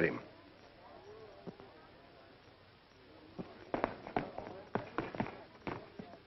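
Footsteps on a hard floor: a handful of sharp, irregular steps in the second half, about two a second, after a quiet stretch with faint background voices.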